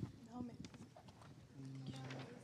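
Faint room sound in a quiet pause, with scattered light clicks and brief, indistinct voice sounds from people in the room.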